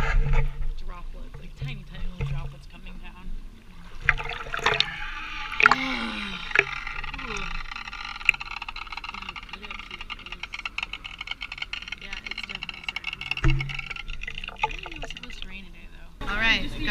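Lagoon water sloshing and splashing close to the microphone as a bather moves through it, turning into a steady rushing from about four seconds in, with voices of other bathers in the background.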